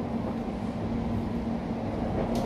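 Running noise heard inside the cabin of an electric London Overground passenger train moving along the track: a steady rumble with a low, steady hum.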